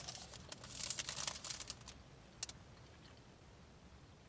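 Food packaging being handled: a cardboard box and clear plastic wrapper crinkling in a dense run of crackles over the first two seconds, with one more sharp crackle about two and a half seconds in.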